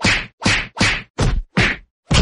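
A run of five heavy whacks of blows landing in a staged beating, evenly spaced at about two and a half a second.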